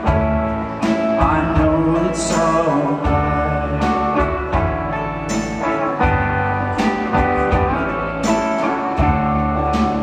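Live rock band playing: electric guitar over bass and drums, with a cymbal crash about every second or so.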